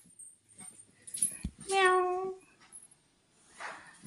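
A pet dog whining once, a short whine held at one pitch about two seconds in.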